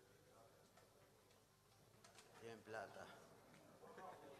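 Near silence with faint voices talking, loudest briefly past the middle.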